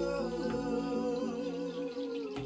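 Slow, meditative improvised music: long held tones, a hummed voice blending with keyboard-like drones over a steady low bass note, with one light tap about half a second in.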